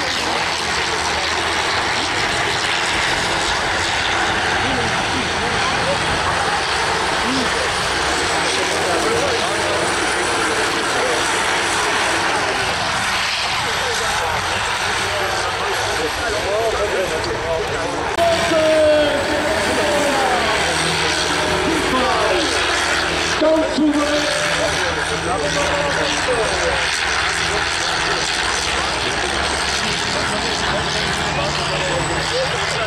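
Combine harvester engines running hard as the machines race over a dirt track, a steady drone with an announcer's voice over a loudspeaker, louder for a moment about two-thirds of the way through.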